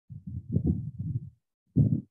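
Muffled low rumbling and knocking close on the microphone, with nothing above the low range: one stretch of about a second and a quarter, then a short, louder burst near the end.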